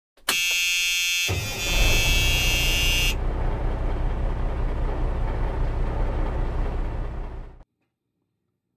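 Synthesized intro sound effect: a buzzing electronic tone starts sharply, then a low rumble joins after about a second. The high tone stops about three seconds in, and the rumble carries on and fades out just before the end.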